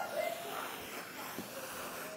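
A child's voice, brief and faint near the start, then low room hiss.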